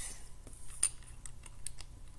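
Small plastic Lego pieces clicking and clacking as they are handled and pressed into place: about half a dozen light, sharp ticks, the clearest just under a second in.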